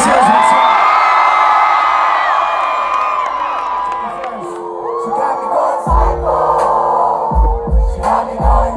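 Large concert crowd screaming and cheering, then a hip-hop track kicks in live over the PA: steady synth chords from about four seconds in and heavy bass hits from about six seconds in.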